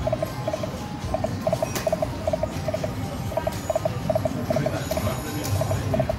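Slot machine on autoplay, reels spinning: its electronic reel sound effect, short beeps about three or four a second, often in quick pairs, over the low hubbub of a casino floor.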